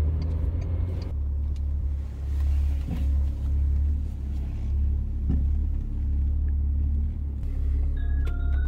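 Low, steady rumble heard inside the cabin of a Volkswagen Phaeton with its engine running.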